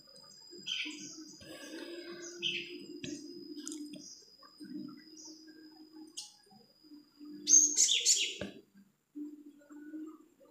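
Short, bird-like chirps, with a louder cluster of chirps about three-quarters of the way through, over a faint steady low hum and a thin high whine that stops near the end.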